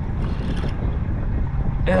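Wind buffeting the action-camera microphone on an open boat, a steady uneven low rumble, with a brief hiss about a quarter of a second in.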